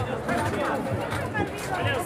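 Indistinct voices and chatter of people nearby, with no clear words, over a steady low hum.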